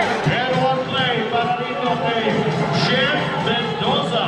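A man's voice speaking over the murmur of a crowd, the commentary of a basketball game's announcer.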